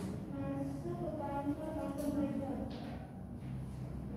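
A student's voice speaking at a distance, stopping about two and a half seconds in, followed by a brief hiss and a low background murmur.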